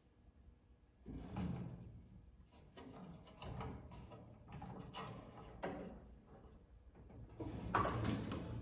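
Hand work with a screwdriver at the screws of a sheet-metal oven panel: irregular scraping, rattling and rustling that start about a second in and come in several bursts, the loudest near the end.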